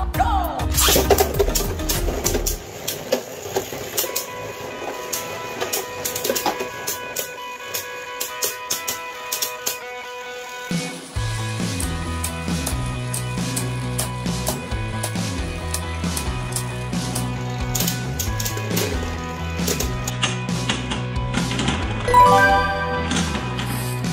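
Background music over Beyblade Burst spinning tops battling in a clear plastic stadium, with irregular sharp clicks of the tops striking each other and the stadium wall. A steady beat with a bass line comes in about halfway through.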